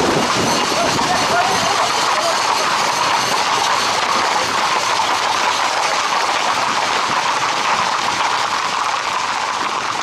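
Hooves of a group of Camargue horses clattering on a paved road as they walk and trot, over a steady din of crowd voices.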